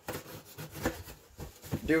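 Hands handling and opening a cardboard shipping box: a few short scrapes and taps, with a man's voice starting near the end.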